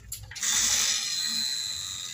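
Water pouring in a steady hissing rush, starting suddenly about half a second in and slowly fading.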